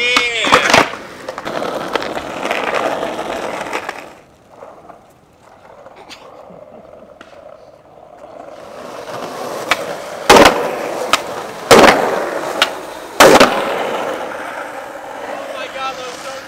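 Skateboard wheels rolling on pavement, the rolling noise building in the second half. Three sharp board impacts come about a second and a half apart as tricks are popped and landed.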